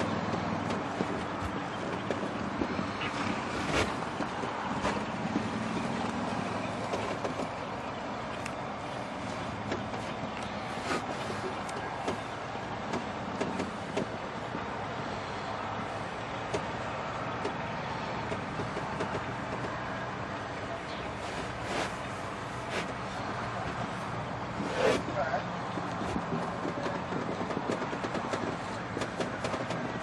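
Outdoor horse-show arena ambience: a steady background hum with faint distant voices and a few scattered sharp knocks, and a short burst of voice about 25 seconds in.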